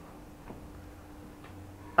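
A pause in speech: low room tone with a faint steady hum, and a couple of faint ticks about a second apart.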